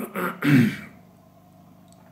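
A man clearing his throat briefly, in short voiced sounds within the first second.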